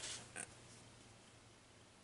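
Near silence: room tone, with a faint short click about half a second in.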